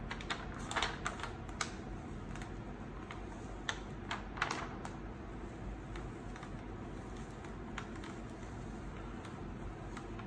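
Clear plastic carrier sheet being peeled slowly off flocked heat transfer vinyl on a T-shirt, giving a scattering of light crackles and ticks over roughly the first five seconds.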